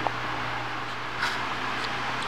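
Room tone: a steady low hum under an even background hiss, with a short click just after the start and a faint soft noise a little past a second in.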